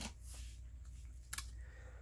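Faint handling noise of plastic wax-melt clamshell packs being swapped by hand, with one sharp click just over a second in, over a low steady hum.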